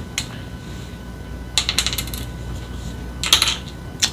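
Small plastic clicks and rattles as a perm rod is handled and wound into the end of a braid: one click just after the start, then two quick runs of clicks, the second near the end and the loudest.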